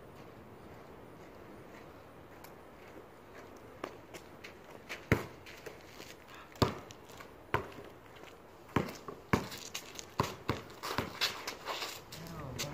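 Basketball bouncing on a concrete driveway: a few single sharp bounces spaced over a second apart, then quicker dribbling mixed with sneaker footsteps and scuffs over the last few seconds.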